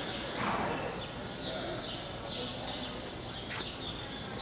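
Horses walking on the dirt footing of an indoor show arena, their hoofbeats under steady hall noise, with a sharp click about three and a half seconds in.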